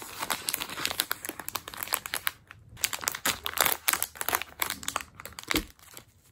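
Clear plastic snack wrapper crinkling as it is handled and opened to get at the wafer cookies inside: a dense run of crackles with a short pause about halfway through.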